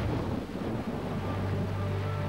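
Shower water spraying in a steady hiss. Sustained music chords over a low hum come in under it about half a second in.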